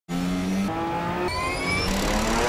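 Race car engine accelerating: its pitch holds, steps up, then climbs steadily, with a gear change near the end.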